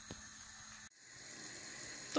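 Faint bubbling of a thick tomato-and-mince sauce simmering in a pan, breaking off briefly about a second in and then slowly building again.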